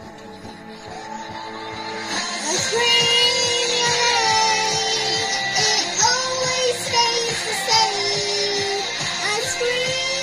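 Background music: a song that starts soft and swells, with a sung melody coming in about two and a half seconds in.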